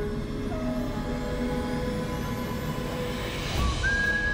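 Dramatic background score of sustained held notes, with a rising sweep building up to a low hit near the end, where a new high held note comes in.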